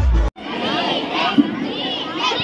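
Bass-heavy dance music cuts off abruptly. Then comes the loud hubbub of a large crowd, many voices chattering and shouting at once, children's high voices among them.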